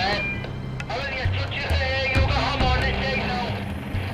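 Background music with a steady low drone, with indistinct voices over it.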